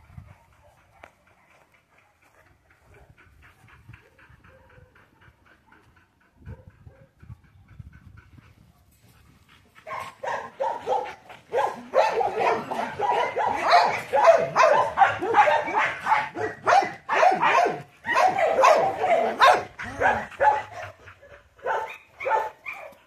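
Dog barking in a rapid, continuous run that starts about ten seconds in and lasts to the end, after a quiet stretch.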